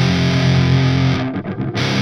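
Heavily distorted electric guitar playing a metal riff: a held chord rings for about the first half, then gives way to short, choppy stabs with tiny gaps before the full sound returns near the end.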